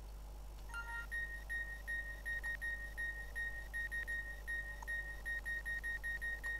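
Electronic beeping: short beeps at one high pitch repeating about three times a second, with a lower steady tone under them at the start and again near the end.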